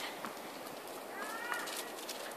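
Faint outdoor background noise with a few light clicks, and a brief faint pitched call about a second in.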